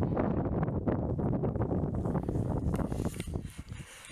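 Wind buffeting the camera's microphone: an uneven, gusty rumble that eases off near the end.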